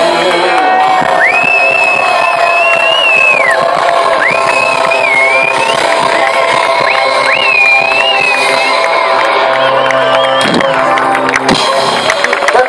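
A live folk-rock band playing loudly, with acoustic guitar, violin, accordion and drums, and high held notes bending over sustained chords. A crowd cheers along.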